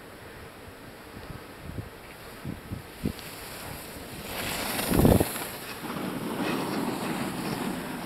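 Wind buffeting the microphone in gusts, then a swelling hiss of skis sliding over packed snow as a skier passes close by about halfway through. The loudest moment is a gust about five seconds in, and the hiss carries on afterwards.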